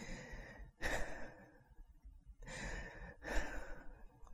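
A woman breathing in and out audibly, a couple of quick, hard breaths. She is demonstrating the wrong way to breathe in, with the shoulders raised, which she warns leads to hyperventilation.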